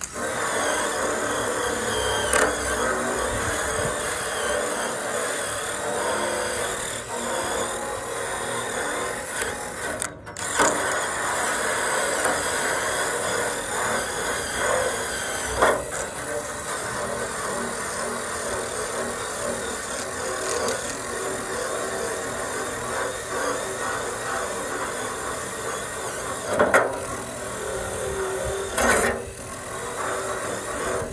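Cordless drill with an abrasive attachment running against a painted metal panel, grinding the paint off. It runs steadily under load, stopping briefly about ten seconds in and again a couple of times near the end.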